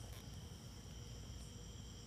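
Quiet background: a faint, steady high-pitched whine made of several thin tones over a low hum. The mower's engine is not running.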